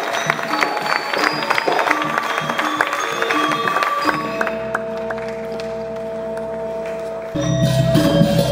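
A Balinese gamelan plays rapid, rhythmic strikes on bronze metallophones with sharp metallic clashes. About halfway through, the quick strokes stop and long tones ring on. Near the end, a louder, deeper passage starts.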